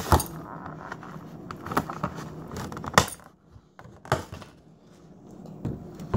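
Clear plastic strawberry clamshell being opened and handled: several sharp plastic clicks and crackles, the loudest at the start and about three seconds in.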